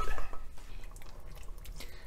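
Quiet wet squishing and small clicks from a pot of thick turkey-wing gravy.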